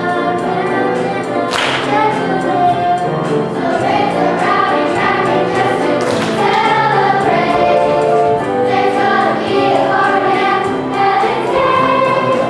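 A children's choir singing a song in unison, with accompaniment that keeps a steady beat.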